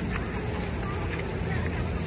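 Splash pad sprinkler jets spraying water onto wet pavement: a steady hiss of spray.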